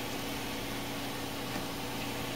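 Steady hum and whir of a running open-frame desktop computer's cooling fans, even and unchanging, with a low drone under a soft hiss.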